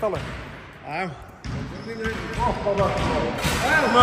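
A basketball bouncing on a hardwood gym floor, with men's voices calling out.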